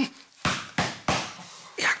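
Three quick hand slaps on a man's shoulder, each a sharp smack that fades fast.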